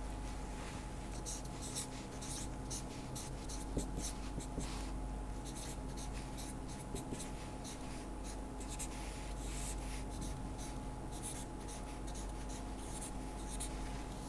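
Felt-tip marker writing on paper: a run of short, irregular scratchy strokes as an equation is written out, over a faint steady hum.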